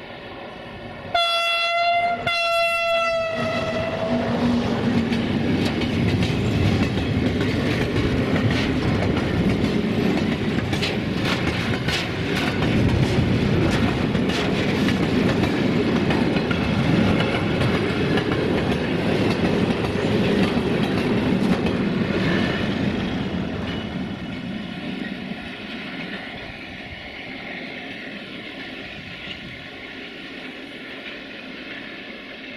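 060-EA electric locomotive sounding its horn in two blasts, the second longer, about a second in. Its train of tank wagons then rolls past, wheels clicking over the rail joints. The rolling noise fades over the last several seconds as the train moves away.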